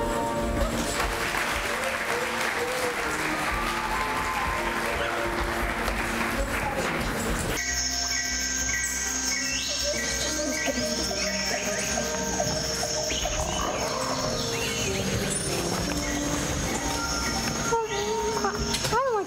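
Audience applause mixed with music for about the first seven and a half seconds; then the applause cuts off suddenly and only instrumental scene-change music plays.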